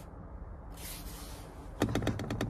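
Quiet car cabin with a low steady rumble, a brief hiss, then a quick run of small clicks and knocks near the end from a hand on the steering wheel. The horn does not sound.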